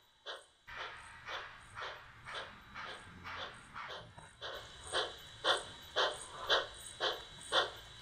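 Model steam locomotive sound: steady chuffing at about two chuffs a second, growing louder about halfway through, over a faint low hum, as the model train rolls slowly along the track.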